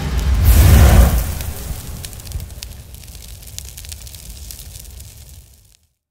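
Intro sound effect: a deep boom about half a second in, followed by a crackling, sparkling tail that slowly fades away and stops near the end.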